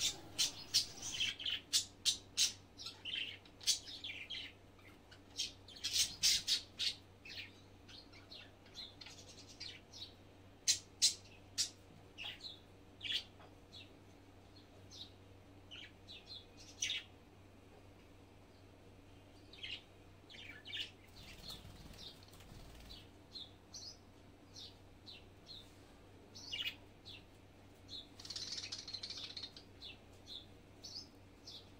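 Birds chirping in short, irregular calls, some in quick runs, over a faint steady low hum.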